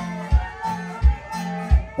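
Live band playing, with a kick drum thumping about every two-thirds of a second under an electric bass line.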